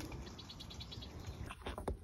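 A faint, rapid high-pitched trill from a small animal, about ten short notes a second for just under a second, followed by a few sharp clicks.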